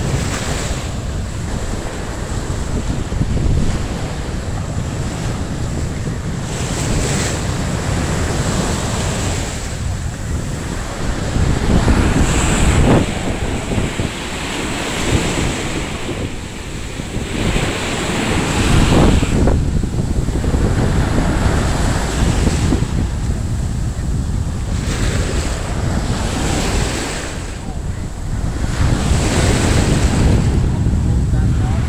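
Ocean surf washing in, with wind buffeting the microphone; the waves swell louder a couple of times, about twelve and nineteen seconds in.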